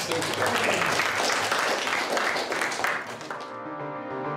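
A class of pupils clapping: a round of applause that dies away about three and a half seconds in, as background music with sustained notes takes over.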